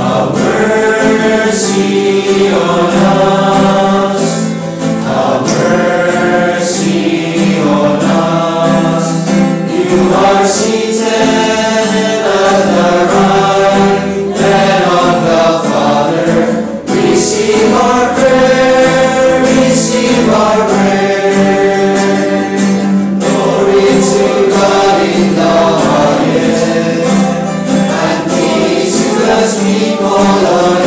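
A choir singing church music with instrumental accompaniment, its melody moving over a steady held low note.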